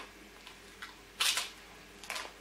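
Crisp matzah being bitten and chewed: several short, dry crunches, the loudest just over a second in.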